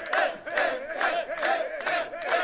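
A crowd of men shouting and cheering together in celebration, many voices overlapping in short repeated shouts.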